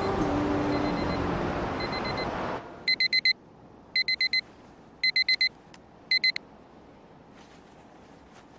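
Electronic alarm clock beeping: short bursts of rapid, high-pitched beeps about once a second, four bursts in all, after soft background music fades out.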